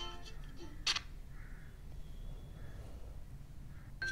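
A spoon clicking once against a small steel bowl as curd is scooped out, over faint room tone.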